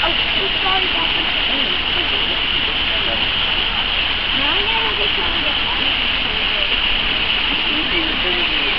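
Steady rushing of running water from the exhibit pool's bubbling fountain jet, with indistinct voices in the background.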